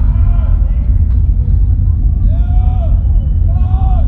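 Loud, steady low droning rumble from a rock concert's PA, with drawn-out crowd calls rising and falling in pitch three or four times over it.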